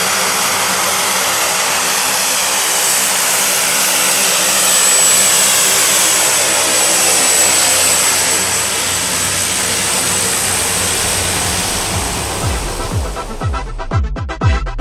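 Short SC.7 Skyvan's twin Garrett turboprop engines as the plane taxis past: a steady rush of propeller noise under a high turbine whine. Electronic music with a beat comes in about a second before the end.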